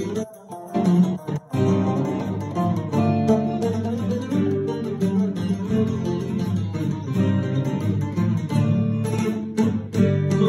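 Cretan mantinades music for lyra, laouto and guitar, an instrumental passage with the plucked strings to the fore. It drops out briefly twice in the first second and a half, then plays on steadily.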